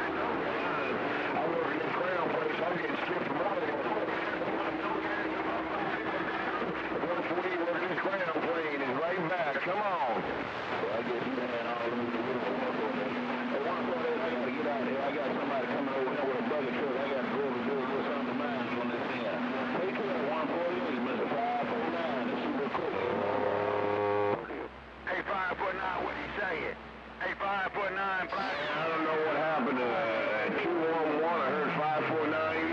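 CB radio receiving many distant skip stations at once on the 11-metre band: garbled, overlapping voices through the radio's speaker, with drawn-out heterodyne tones from clashing carriers. The signal briefly fades in and out near the end, with falling whistles.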